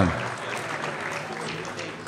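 A crowd clapping, with the applause gradually dying away.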